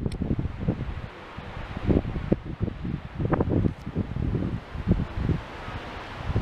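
Wind buffeting the camera microphone in irregular low gusts.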